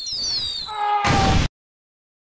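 Advertisement sound effects for a spray can blasting off like a rocket: high falling whistles, a brief held note, then a loud rushing blast that cuts off abruptly about one and a half seconds in, leaving silence.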